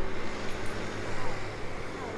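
Steady city road traffic noise with people's voices close by.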